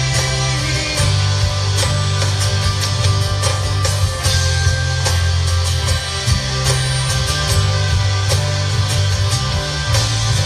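Live band playing an instrumental passage of a worship song: guitars over a strong bass line and a drum kit, amplified through PA speakers.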